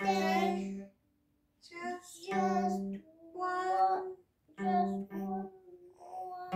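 Singing in about five short phrases with brief silent pauses between them, mainly a child's voice, over a faint ringing tone from a small acoustic guitar.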